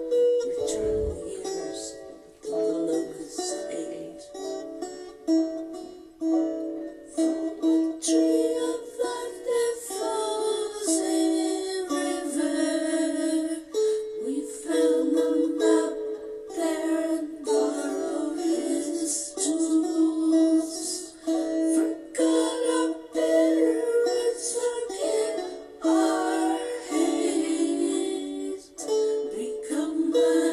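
Instrumental break of a song played on a plucked string instrument, a run of picked notes and chords in the ukulele-to-guitar range, with no singing; a brief low thud sounds just after the start.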